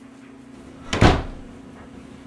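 A single sharp knock about a second in, two strikes in quick succession that die away within half a second, over a steady low hum.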